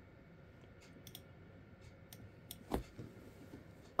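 Faint, scattered clicks of a computer being operated, with one louder click about three-quarters of the way in.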